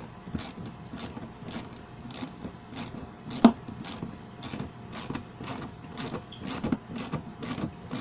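Ratchet wrench clicking in a steady rhythm, about two to three clicks a second, as a nut is tightened on a bolt through a metal wagon bed; one click about three and a half seconds in is louder than the rest.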